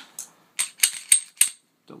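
Slide of a Smith & Wesson M&P9c compact 9mm pistol being racked by hand to clear the chamber: a quick run of sharp, ringing metal clicks and clacks.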